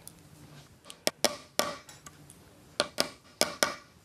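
Small brass-headed hammer tapping a punch to seat metal string-through ferrules into the back of a solid wooden guitar body: about eight light, bright metallic taps, loosely in pairs, with quiet gaps between.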